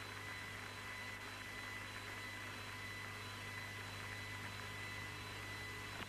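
Steady hiss and low mains hum of an old broadcast audio line, with faint steady high tones and no change throughout.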